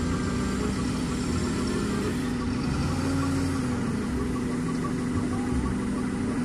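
Engine of a propane-fuelled Hyster forklift running steadily as it carries a loaded pallet.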